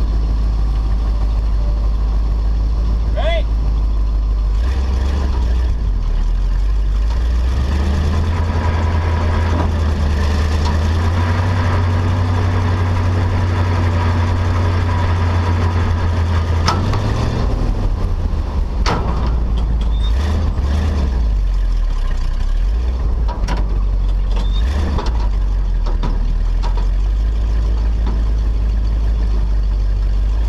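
Tow truck engine running steadily, its pitch rising about eight seconds in as it comes under more load and dropping back after about seventeen seconds, with a few brief clicks along the way.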